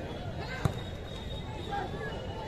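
A football kicked once, a single sharp thud about two-thirds of a second in, over steady crowd chatter.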